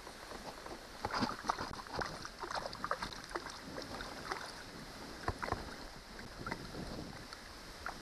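Small water splashes and scattered light knocks and clicks around a kayak while a hooked fish is handled, with some wind on the microphone.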